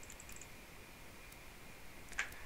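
A few faint computer mouse clicks near the start, over quiet room tone with a faint steady high hum.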